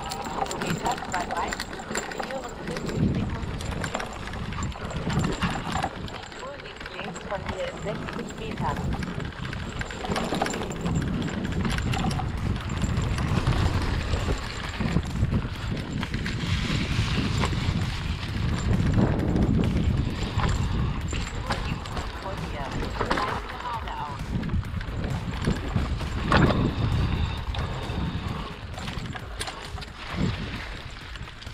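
Hardtail mountain bike riding a rough forest trail: tyres running over dry leaves and dirt, with the bike rattling and knocking irregularly over roots and bumps.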